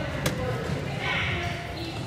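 A ball bouncing once on a hardwood gym floor shortly after the start, over the murmur of spectators' voices in the gymnasium.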